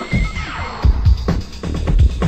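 Techno-house DJ mix from 1991 playing. The kick drum thins out briefly while a sound glides down in pitch, then the kick comes back in just under a second in.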